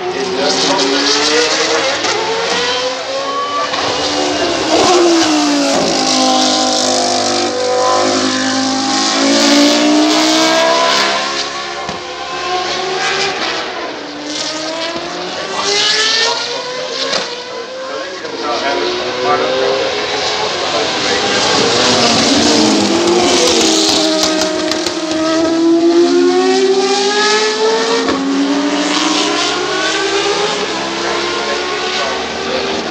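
Single-seater racing cars lapping during BOSS GP practice, their high-revving engines climbing and dropping in pitch with each gear change. The engines are loudest in two spells, one about a quarter of the way in and one later on.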